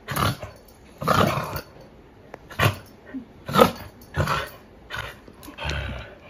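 A dog making a string of short vocal sounds, about seven in six seconds, while it stands on its hind legs begging.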